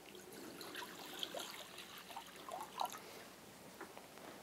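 Water poured from a jug into a washbasin, faintly trickling and splashing.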